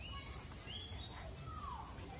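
Outdoor ambience with steady low background noise and a few short bird calls: a high chirp at the start, a rising chirp just under a second in, and a falling whistle near the end.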